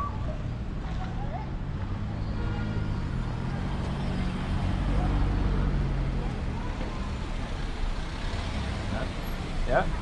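Low, steady rumble of car engines and tyres on a street, swelling around the middle as a car drives up and stops alongside.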